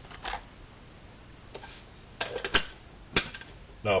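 Light metal clinks and clacks of an anodised aluminium tea kettle being handled, its lid set in place and wire handle taken up. One click comes near the start, a quick cluster of clacks about two seconds in, and one more sharp click near the end.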